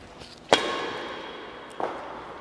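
Badminton racket striking a shuttlecock in a backhand drive: one sharp crack about half a second in that rings on in the hall's echo, then a softer knock near the end.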